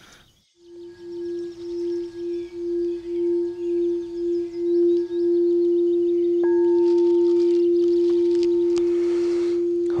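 Frosted quartz crystal singing bowl played by circling a wand around its rim: a single steady tone that swells in pulses, about two a second, for the first five seconds, then holds and rings on. A light touch about six and a half seconds in briefly adds a higher ring.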